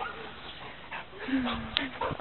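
A pet dog whining briefly near the end, among children's voices.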